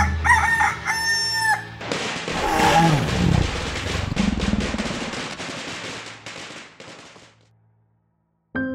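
A rooster crows once, a held call that drops at the end. It is followed by a long, rough dinosaur roar sound effect that fades away over several seconds.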